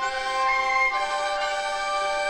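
Chinese traditional orchestra playing a slow passage of long held notes, with several pitches sounding together and the notes changing a few times.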